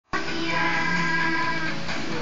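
Music playing from a television, heard across the room: several sustained notes held steady, cutting in abruptly at the start and shifting near the end.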